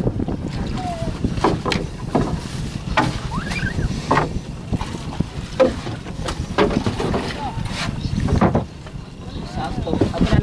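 Wind buffeting the microphone aboard a small outrigger boat being poled through shallow water, with scattered sharp knocks and faint distant voices.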